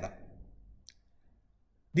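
A short pause in a man's talk: his last word trails off, then a single faint click about a second in, over near silence.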